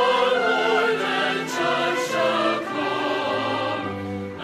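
Recorded choral music: a choir singing long, sustained notes with a slight waver.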